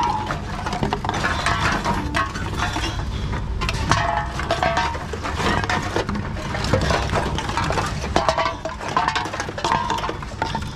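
Empty aluminium drink cans and bottles clinking and rattling as they are picked out of a pile and fed into a reverse vending machine, with frequent short knocks over the steady hum of the machine.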